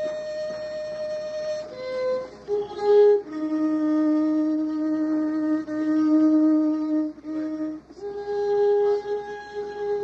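Solo violin playing a slow melody of long held notes that step downward in pitch, the lowest note held for about four seconds mid-way before the melody rises again near the end.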